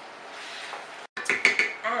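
Wooden spoon stirring chicken pieces and water in a nonstick pan: a soft scraping, then a quick run of clattering knocks against the pan in the second half.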